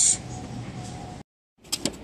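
Faint steady background noise with a thin, steady hum, cut by a brief moment of dead silence at an edit, followed by a few sharp clicks.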